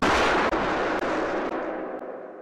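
A single loud gunshot that rings out and slowly fades over about two seconds.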